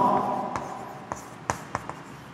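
Chalk writing on a blackboard: several short, sharp taps and scratches as letters are chalked on.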